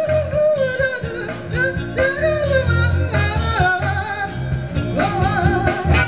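Live band playing: a lead vocal line with vibrato over electric bass, drums and guitar.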